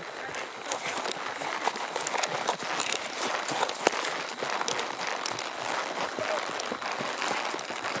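A horse being ridden along a brushy dirt trail, heard from the saddle: irregular clicks and rustling over a steady noisy background, with no clear rhythm.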